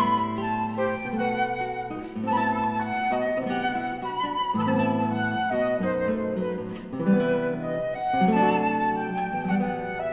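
Flute playing a melody of held and moving notes over guitar accompaniment, a flute-and-guitar duo performing live.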